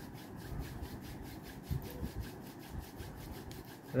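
Two hands rubbed briskly palm against palm: a steady, even swishing of skin on skin at about five strokes a second.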